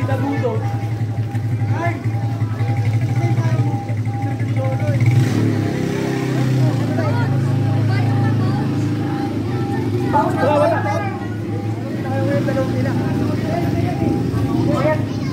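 A motor vehicle's engine running steadily, its pitch rising a little about five seconds in, under the chatter of a crowd walking along a street; voices swell about ten seconds in.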